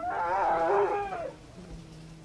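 An elephant calf calling once: a loud pitched call of just over a second that rises and falls slightly in pitch.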